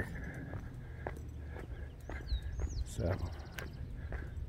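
Footsteps of a walker in running shoes on asphalt, about two steps a second, over low wind rumble on the microphone. A few short high chirps come in about halfway through.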